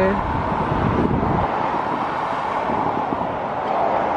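Wind rumbling on the microphone for the first second and a half, over a steady outdoor hiss.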